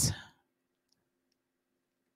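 The end of a woman's spoken question, then a pause of near silence with a faint steady hum and two tiny clicks.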